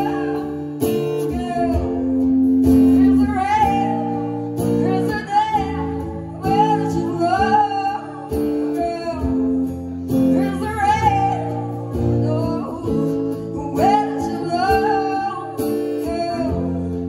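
Live band playing: a woman singing phrase after phrase over electric guitars, bass guitar and drums.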